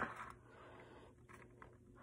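Quiet room tone with a few faint soft knocks about halfway through, from a hardcover picture book being handled and repositioned.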